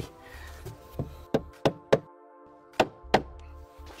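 Rubber mallet tapping a hollow composite decking plank down into its starter clips: about six short knocks, four in quick succession from about a second in, then two more near the end.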